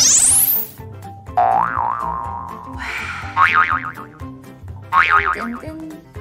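Cartoon sound effects over light background music: a fast rising swoop at the start, then wobbling boing sounds about a second and a half in, again around three and a half seconds, and near five seconds.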